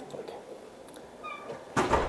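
Quiet room tone with a brief, faint high squeak about a second and a quarter in, then a short, louder thump-like noise near the end.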